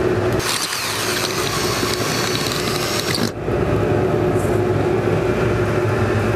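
Steady machinery hum with a low, even tone throughout. From about half a second in until about three seconds, a cordless drill runs on top of it, driving a ceramic insulation bolt through the board into the fibre lining. The drill adds a hiss, then stops suddenly.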